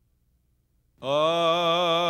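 About a second of near silence, then a man's voice opens a Hawaiian chant (oli) on one long, loud held note with a strong wavering vibrato.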